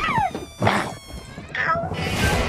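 A short high-pitched cry that rises and then falls, a sharp hit, then another brief falling cry, over a steady held tone.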